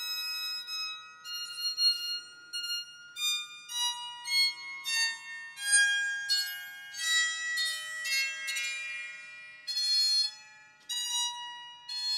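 Bowed psaltery played one string at a time with a violin bow: a run of about twenty high, sustained notes wandering up and down, each ringing on into the next. The strings sound pretty much in tune.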